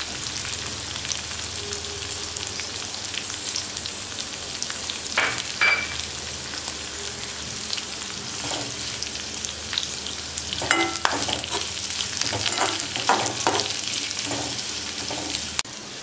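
Green chillies, curry leaves and whole spices sizzling in hot oil in an aluminium kadhai: the tempering (phodni) for poha chivda. A metal slotted spatula stirs and scrapes against the pan, with scattered clinks, more of them in the second half.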